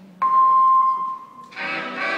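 Recorded routine music starting over a gym's loudspeakers: a single held high note comes in suddenly just after the start, then the full instrumental music enters about a second and a half in.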